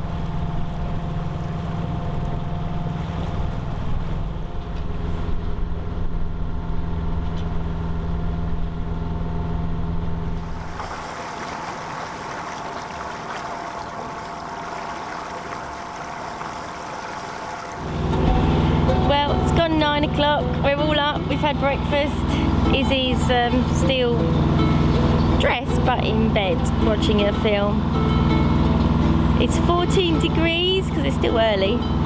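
A sailboat's inboard engine running steadily under way, a low hum with even tones. From about 11 to 18 seconds a quieter stretch without the engine hum, then the engine hum returns under a voice.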